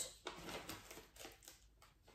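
Near silence in a small room, broken by a few faint soft rustles and ticks in the first second and a half.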